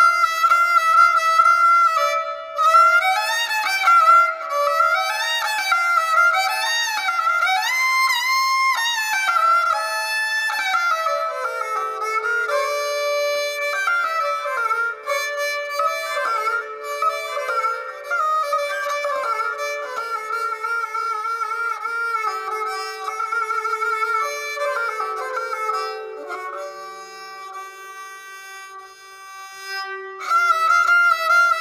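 Suroz, the Balochi bowed fiddle, playing a Balochi folk melody with sliding, ornamented runs, growing softer over the last few seconds.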